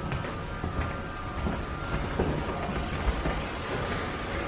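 Low, steady rumble of interior ambience with a few faint knocks of footsteps on a stairway.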